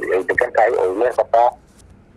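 A man's voice speaking, breaking off into a short pause near the end.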